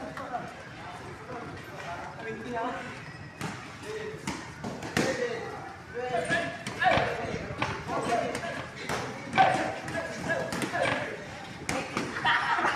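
Several people talking in a boxing gym, with irregular sharp thuds and slaps over the talk that come thick and fast from about a third of the way in, during a group squat drill on the mat.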